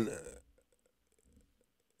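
The tail of a man's spoken word fading out, then near silence for about a second and a half.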